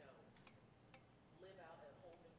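Very faint speech, heard only as a low murmur, with two light clicks within the first second.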